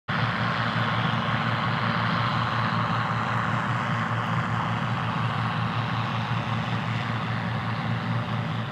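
Deutz-Allis Gleaner L3 combine running steadily while harvesting wheat: an even engine hum under a broad rushing noise.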